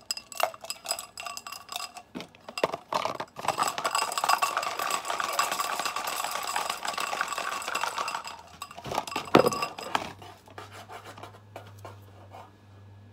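Sharpie markers clinking and rattling inside a drinking glass, making the glass ring. Scattered clinks turn into several seconds of dense, continuous rattling, which ends with a sharp knock.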